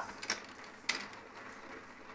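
A few light clicks of mahjong tiles being handled and tapped as a player sorts his hand at the table, the sharpest about a second in.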